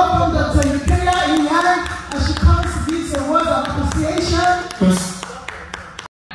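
A woman's voice through a handheld microphone, with short sharp taps scattered through it.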